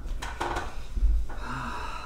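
A few short rustles of a tissue being handled, then a long noisy breath through the nose into a tissue, with a brief low grunt, from a man whose mouth and face are burning from super-hot pepper-coated peanuts.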